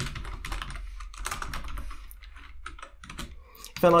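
Typing on a computer keyboard: a run of irregular key clicks as a line of code is entered.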